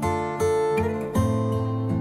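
Background music of a strummed acoustic guitar playing chords, changing chord about a second in.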